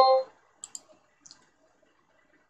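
A ringing, pitched tone with several notes fades out in the first quarter second, followed by a few faint, sharp clicks of a computer mouse: two close together under a second in, and one more a little later.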